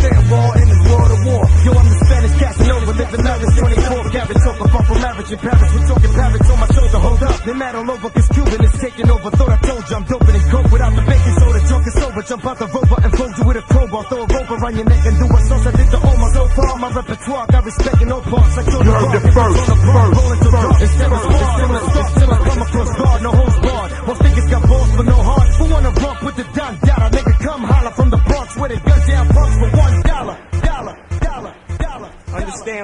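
Hip hop track from a DJ mixtape, rapped vocals over a beat with heavy, repeating bass notes.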